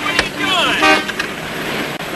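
Car horns honking in short blasts from traffic at a street crossing, with a voice calling out among them.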